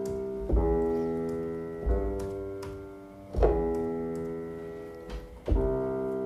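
Roland digital piano keyboard playing single notes slowly, one at a time, about every one and a half seconds, each ringing and fading before the next: four notes.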